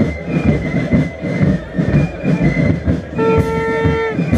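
Carnival brass band playing amid a dense crowd, with a thin high held note over low, dense rhythmic noise. About three seconds in, a loud, steady horn note rich in overtones comes in and holds for about a second.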